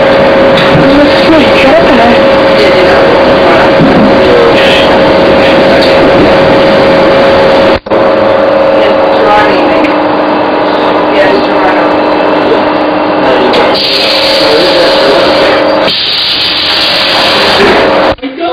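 Loud, steady running noise inside a moving passenger train, a rushing rumble with a steady humming whine, broken for an instant about eight seconds in.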